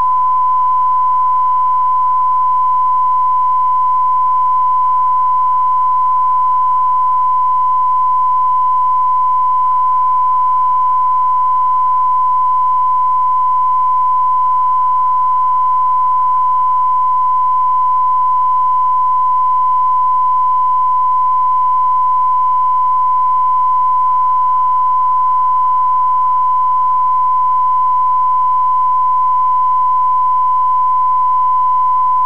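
Television transmitter's test tone sent over a black screen after closedown. It is a single loud, pure tone at one constant pitch, held unbroken.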